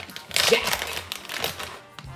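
Plastic bag of shredded cheese crinkling as it is handled, a dense run of small crackles that fades out near the end.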